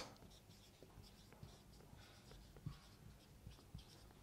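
Very faint marker writing on a whiteboard: soft scratches and small ticks as the felt tip strokes out letters.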